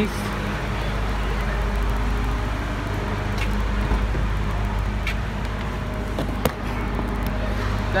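Car engine idling with a steady low hum. A few sharp clicks come over it, the sharpest a little past the middle.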